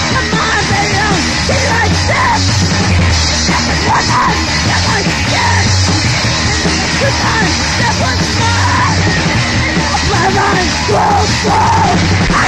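Loud noise rock: a dense wall of distorted electric guitar and drums with yelled, screeching vocals over it.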